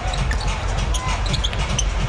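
Basketball being dribbled on a hardwood court: a run of irregular dull thumps over steady arena crowd noise.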